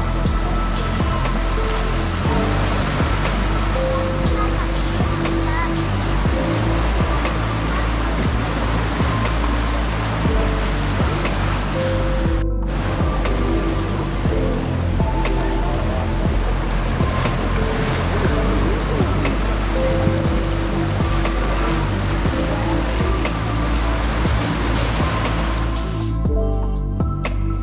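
Sea surf washing over shoreline rocks, a loud continuous rush, with background music of short held notes and a light regular tick laid over it.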